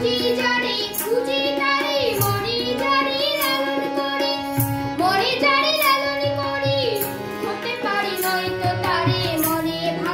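A boy sings a Bengali folk-style song in long, wavering phrases with held notes. He is accompanied by harmonium and keyboard, and a beaded shaker ticks in a steady rhythm.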